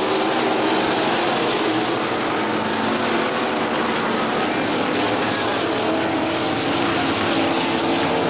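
IMCA Sport Mod race cars' V8 engines running steadily on the dirt oval at an easy, even pace as the field slows for a caution.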